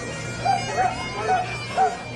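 Bagpipes playing, a steady drone with a melody over it, mixed with indistinct nearby voices that come and go.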